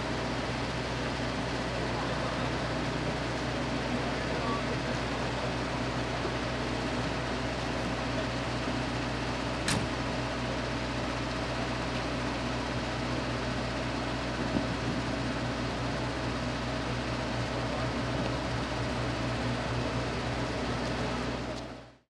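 A steady low mechanical hum with indistinct voices in the background. There is one sharp click about ten seconds in, and the sound fades out at the very end.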